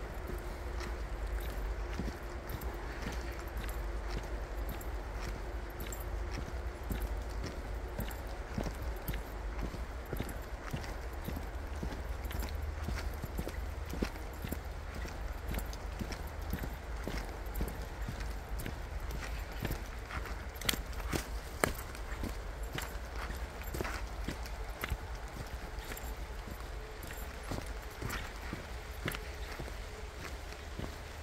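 Footsteps of a person walking along a dirt and leaf-strewn forest trail: an even run of steps over a low steady rumble on the microphone.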